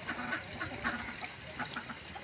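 Domestic ducks quacking in a run of short calls.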